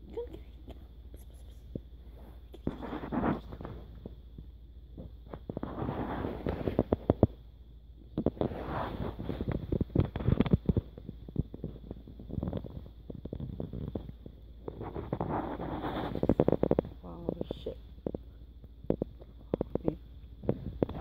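Several kittens eating from a dish close to the microphone: irregular bursts of chewing and smacking, each lasting a second or two, a few seconds apart.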